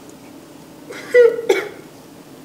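A man coughing, two short coughs in quick succession about a second in.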